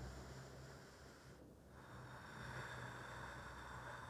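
Quiet room tone with a faint, slow breath, a soft hiss that starts about halfway through and carries on to the end.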